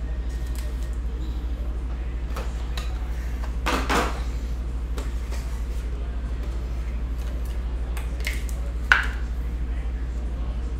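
Light clicks and clacks of a trading card being fitted into a hard plastic holder, with a louder clack about four seconds in and a sharp click about nine seconds in, over a steady low hum.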